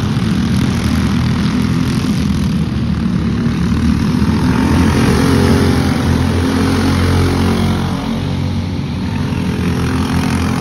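Several racing go-karts' small engines running at speed, a steady buzz that swells as karts pass close by, loudest about halfway through.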